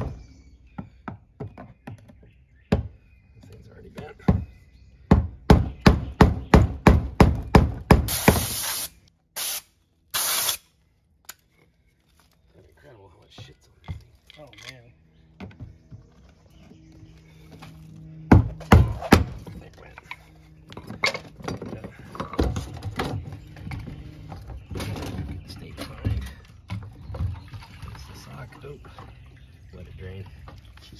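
Hammer striking a punch against the fuel-pump module's lock ring on a truck fuel tank: a rapid run of sharp taps for the first eight seconds, driving the ring round to free the pump. Two brief bursts of hiss come about eight and ten seconds in, then a second short run of taps, followed by irregular knocks and handling noise as the work goes on.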